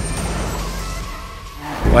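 A noisy, whooshing sound effect for an animated video transition, cutting in abruptly and fading away over about a second and a half. Near the end, the low sound of the Yamaha XJ6's inline-four engine comes back in.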